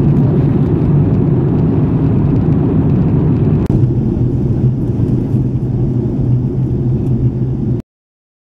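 Steady, loud, low rushing drone inside a jet airliner's cabin in cruise flight: engine and airflow noise heard from a window seat. The drone shifts slightly a little under four seconds in, where two recordings are joined, and it cuts off abruptly near the end.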